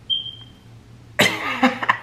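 A man's loud, wordless excited outburst starting about a second in, with a brief thin high tone just before it.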